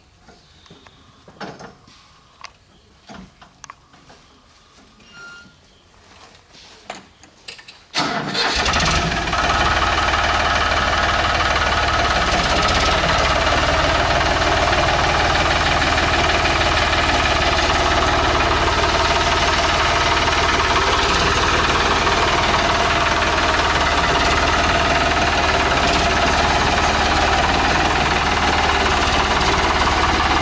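A few light knocks in near quiet, then about eight seconds in a Farmtrac tractor's diesel engine comes in suddenly and runs steadily as the tractor drives.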